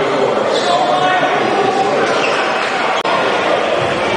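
A basketball bouncing on a hardwood gym floor amid voices in the gymnasium, with a short click and dropout about three seconds in.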